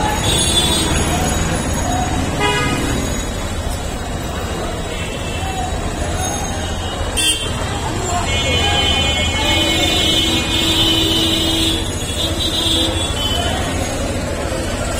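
Busy night street traffic: engines running under people's voices, a short vehicle horn toot about two and a half seconds in, and a long steady horn honk of about three seconds near the end.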